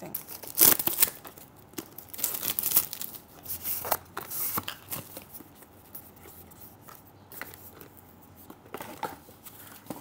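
Cardboard and paper packaging of a small product box being handled and opened: rustling, scraping and tearing. It is loudest in the first three seconds and quieter after about five seconds.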